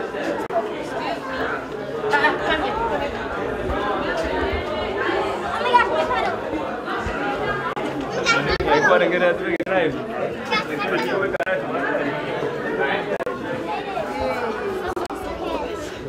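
Many people chattering at once, overlapping voices of adults and children with no single speaker standing out.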